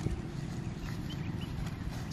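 Footsteps of a person walking on a dry dirt bank, a few short scuffing steps over a steady low background noise.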